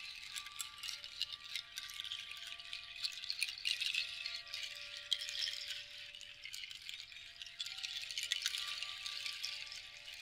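A hand-held strand rattle shaken continuously, giving a dense, fast clatter. Faint sustained ringing tones from chimes or bowls sound underneath, fading in and out.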